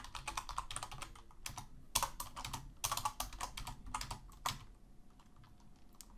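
Typing on a computer keyboard: irregular runs of keystroke clicks, thinning out to a few quieter taps in the last second or so.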